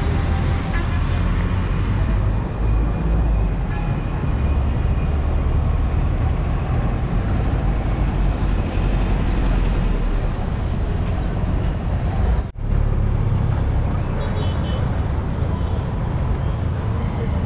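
Street traffic noise from passing rickshaws, motorbikes and a bus: a steady, rumbling wash of engines and tyres. It cuts out for a moment about twelve seconds in.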